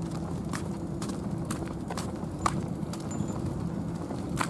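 Footsteps on an asphalt path, about two steps a second, over a low steady hum.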